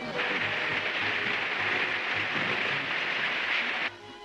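A steady hiss lasting nearly four seconds, then cut off suddenly.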